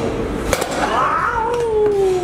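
A sharp knock about half a second in, then a man's long, drawn-out groan that falls slowly in pitch.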